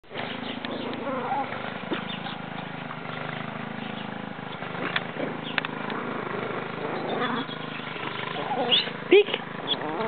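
Small Chihuahuas playing and scuffling, with growls and high yips and a loud short yelp near the end, over a steady low hum.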